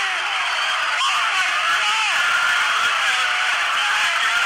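Tinny, thin-sounding voices talking and calling out over a steady background hiss, with no beat or bass.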